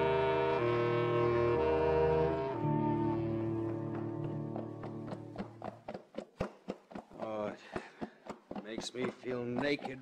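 Orchestral music bridge of strings and brass, fading out over the first half. It gives way to a regular beat of horses' hoofbeats, a radio sound effect, with voices coming in near the end.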